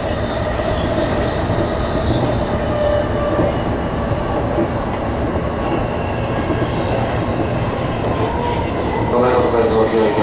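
Electric commuter train running along the track, heard from inside the front car: a steady rumble of wheels on rail with a faint steady whine.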